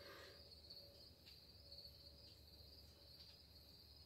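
Near silence, with faint crickets chirring steadily in the background.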